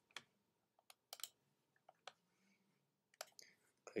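Faint, scattered clicks of a computer mouse, about half a dozen irregular single and paired clicks over a near-silent background.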